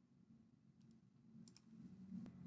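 Near silence: faint room tone with a few soft computer mouse clicks in the second half.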